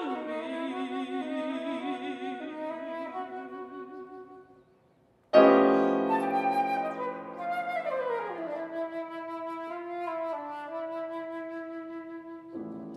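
Concert flute playing a slow, low line with vibrato that fades out about four seconds in. After a brief silence, a loud grand piano chord enters and the flute continues over it, running down to a long held note.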